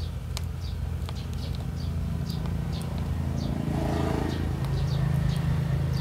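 A steady low mechanical hum that swells a little in the second half, with faint scattered high chirps and ticks over it.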